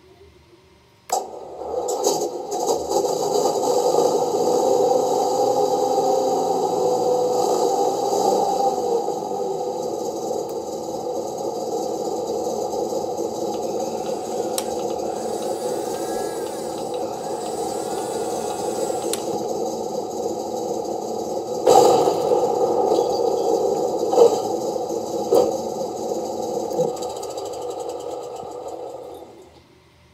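Simulated tank engine sound from a Clark TK50E sound board, played through the small onboard speaker of a Heng Long RC Pershing tank. It starts suddenly about a second in and runs steadily, a little louder over the first several seconds. A few sharp clicks come in the second half, and it dies away near the end.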